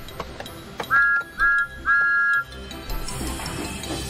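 Steam engine whistle giving three toots, two short and one longer, each a clear two-note chord that slides briefly up at the start: the just-repaired whistle sounding properly. Background music plays underneath.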